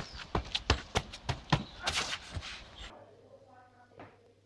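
Quick footsteps on stone paving, about four steps a second, stopping about three seconds in.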